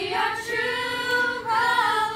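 Group of girls singing a cappella in harmony, holding long notes with short breaks between phrases.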